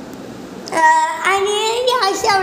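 A young girl's voice sung out in a sing-song way, starting a little under a second in: two long, drawn-out notes, the second slowly rising in pitch.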